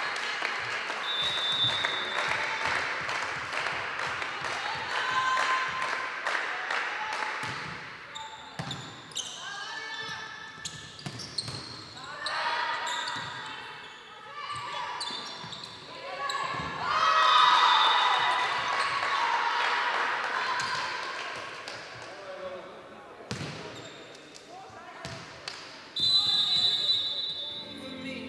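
Indoor volleyball match: the ball is struck and hits the court again and again, with shouting and voices ringing through the sports hall. The loudest burst of voices comes a little past the middle.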